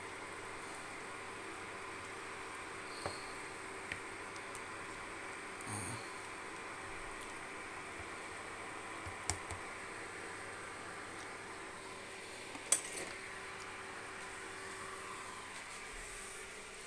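Steady fan hum of an induction hob heating a pot of simmering soup, with a few light clicks of a plastic spatula against the enamel pot, the sharpest about three-quarters of the way through.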